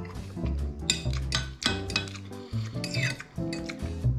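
Background music with a bass line of held notes that change every half second or so, with a few light clinks of a metal fork against a plate.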